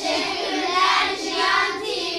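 A group of children singing together in one voice, a short sung phrase.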